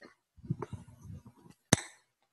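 Microphone being handled and switched on: a run of low bumps and rustling, then one sharp click near the end.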